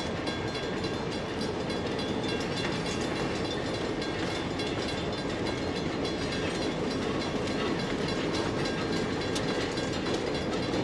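A Providence & Worcester passenger train rolling past: the coaches' wheels on the rails make a steady rumble. The diesel locomotive at the rear draws nearer and the sound grows a little louder toward the end.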